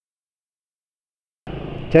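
Dead silence, then about one and a half seconds in, a steady rush of motor-scooter riding noise cuts in abruptly. A man's voice starts right at the end.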